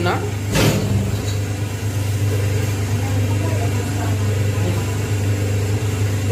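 Semi-automatic hydraulic single-die paper plate machine running with a steady low hum, with one sharp clack about half a second in.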